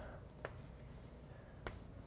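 Chalk drawing on a blackboard: faint scratchy strokes with two sharp taps a little over a second apart as the chalk meets the board.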